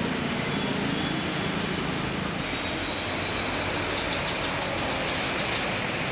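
Steady outdoor background noise, with a small bird's few short high chirps about three seconds in, then a quick high trill.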